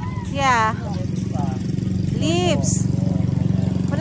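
A motorcycle engine idling steadily with an even, rapid pulse. A toddler makes two short high-pitched vocal sounds, about half a second in and again about two and a half seconds in.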